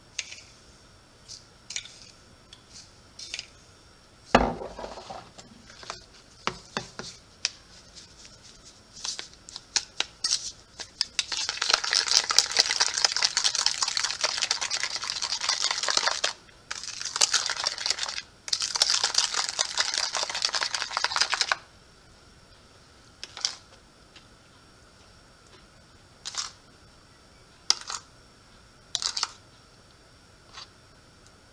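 A spoon clinks and scrapes in a glass jar of xylitol, with one sharp knock about four seconds in. From about eleven seconds a spoon briskly stirs cream cheese and xylitol in a plastic bowl for some ten seconds, a rapid scraping that breaks off twice briefly, followed by a few scattered clicks.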